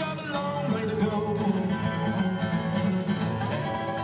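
Live acoustic music: two acoustic guitars played together as a duo.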